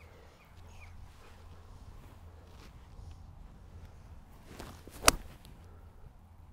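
Golf club swinging through with a short swish, then a single sharp click of the clubface striking the ball near the end: a clean, well-struck shot.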